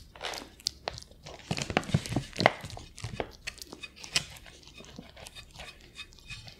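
Ferret crunching dry kibble off a glass plate close to the microphone: a run of short sharp crunches and clicks, thickest and loudest between about one and a half and two and a half seconds in.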